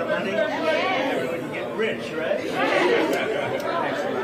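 Several people talking at once in indistinct, overlapping chatter.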